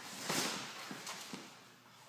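Two wrestlers scrambling on a foam wrestling mat: a scuffing swish of bodies and clothing sliding about half a second in, then a few light knocks and taps, dying away near the end.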